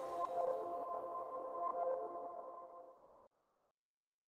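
Electronic background music at the end of a shared video, dying away: a held chord of a few steady tones that fades and stops about three seconds in.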